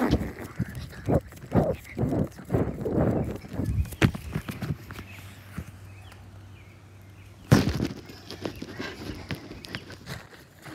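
Children bouncing on a backyard trampoline: rhythmic thuds on the mat about twice a second for roughly four seconds, then a quieter stretch and one loud thump near the end.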